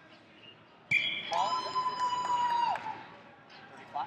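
Referee's whistle blown once in a long, steady blast of about a second and a half, after a sharp knock, stopping the wrestling action.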